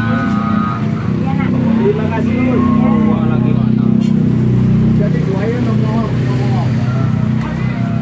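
Steady low rumble of a motor vehicle running close by, with people talking over it.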